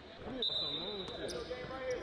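A basketball bouncing on a hardwood gym floor under a faint man's voice, with a thin steady high tone for about a second.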